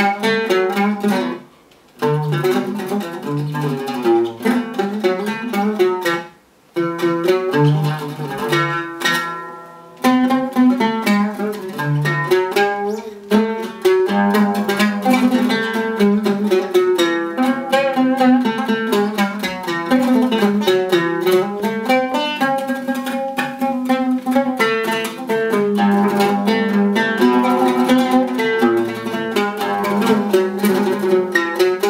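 Egyptian oud played solo with a plectrum: a stream of plucked melodic phrases in a samai, with a few short pauses between phrases in the first ten seconds.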